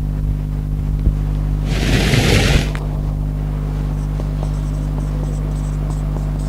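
Steady low electrical hum, with a brief rustle about two seconds in lasting about a second, then faint squeaks of a marker writing on a whiteboard in the last couple of seconds.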